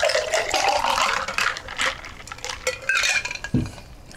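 A cocktail poured from a metal cocktail shaker into a tall glass over ice: splashing liquid and clinking ice, the pour rising in pitch as the glass fills. Near the end there is a knock as the shaker is set down on the table.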